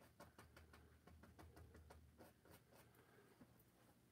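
Near silence, with faint, irregular scratchy ticks of a paintbrush working acrylic paint on canvas, thinning out in the last second.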